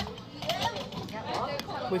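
Speech: a person talking, with no other distinct sound standing out.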